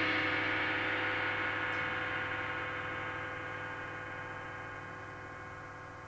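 Cymbals ringing out after the last strikes, a long ring that fades slowly and evenly without any new hit.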